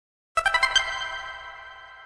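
Logo jingle of bright chiming notes: a quick run of about six notes starting about a third of a second in, then ringing on and fading away.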